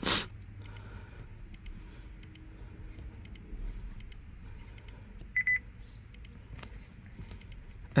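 A short, high electronic beep of a few quick pulses about five seconds in, over a low, steady background with faint taps.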